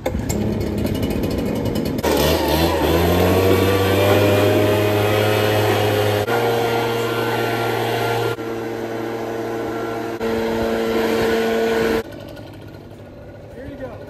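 Handheld blower running, its pitch rising as it spools up about two seconds in and then holding steady while it blasts water off a wet jet ski; the pitch and level jump abruptly several times.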